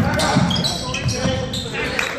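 Basketball game on a gym's hardwood court: sneakers squeak sharply on the floor amid thudding footfalls or ball bounces, with players' voices.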